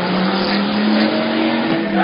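Race car engines at speed as several cars pass through a corner, with a few overlapping engine notes that rise and fall slightly.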